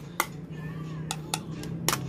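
Metal spoon tapping and scraping against a plastic bowl and blender jug while tamarind pulp is spooned in: about four sharp clicks spread through the two seconds, over a steady low hum.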